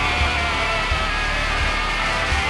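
Instrumental passage of a Swedish symphonic progressive rock song, with no singing: dense sustained chords over bass, with low drum hits about every 0.7 seconds.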